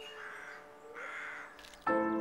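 Two harsh crow caws, each about half a second long, one after the other, as a held music chord dies away; a new loud sustained chord of the score comes in near the end.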